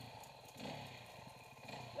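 Off-road motorcycle engine running, heard faintly, with a brief swell about half a second in.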